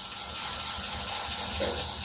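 Low, steady hiss with a faint hum: soundtrack background noise, with a brief faint sound about one and a half seconds in.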